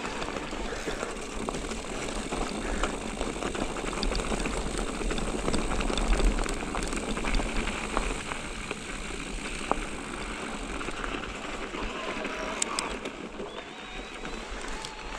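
Mountain bike rolling along a rocky dirt trail: steady tyre noise over loose stones, with scattered clicks and rattles from the bike and a low rumble underneath.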